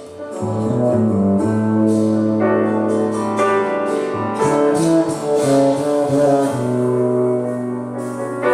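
Live piano and double bass playing a slow, sustained jazz passage with long held bass notes under piano chords; it swells louder about half a second in.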